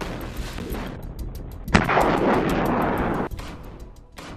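Weapons fire: a few sharp reports, then a loud blast about two seconds in followed by a roar that lasts about a second and a half before dying away.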